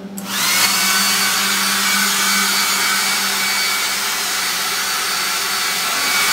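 Handheld hair dryer switched on just after the start, spinning up within about half a second and then blowing steadily with a thin high whine.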